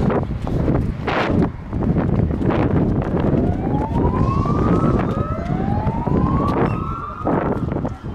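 Emergency vehicle siren wailing in two rising sweeps of about two seconds each, the first starting around three seconds in, over heavy wind rumble on the microphone.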